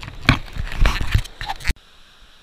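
Irregular scraping and knocking from a plastic gold pan being worked with water and black sand, cutting off suddenly near the end.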